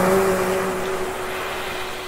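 Acoustic guitar notes ringing on and slowly fading, with no new note played, over the steady wash of ocean surf.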